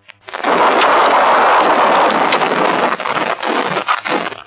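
Storm-force wind buffeting a microphone, a loud rushing noise that starts suddenly about half a second in and wavers near the end.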